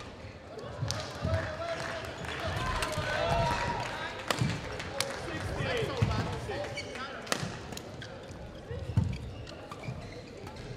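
Badminton rally sounds in a sports hall: sharp racket strikes on the shuttlecock, players' footfalls on the court, and squeaks from shoes sliding on the court floor.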